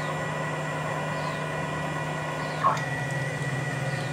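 A CNC router's 420 oz-in stepper motors driving the axes along ball screws on a traverse, a steady whine of several tones. The tones shift a little under three seconds in as the move changes.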